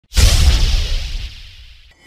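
An intro sound effect: a sudden whoosh with a deep rumbling low end, hitting hard just after the start and fading away over nearly two seconds.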